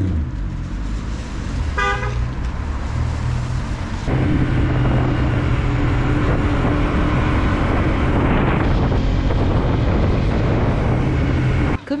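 A classic American V8 sedan pulls away with a low engine rumble and gives one short horn toot about two seconds in. From about four seconds in, a motorcycle engine cruises at a steady pitch along a wet road, with wind noise on the helmet or handlebar microphone.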